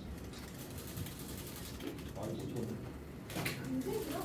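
Low, indistinct voices of people talking, with a single short knock about three and a half seconds in.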